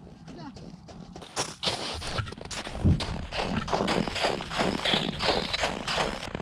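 Hurried footsteps crunching across snow on lake ice. They start about a second and a half in and keep a quick, even pace of about three steps a second.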